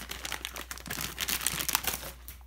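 Packaging being handled in a cardboard shipping box: a clear plastic bag and brown paper packing crinkling and rustling in a dense run of irregular crackles.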